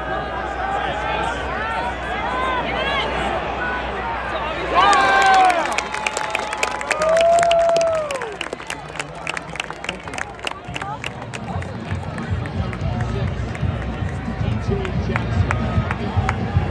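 Football stadium crowd cheering and shouting during a play, with loud single yells about five and seven seconds in, followed by clapping. Music with a low beat comes in about eleven seconds in under the crowd.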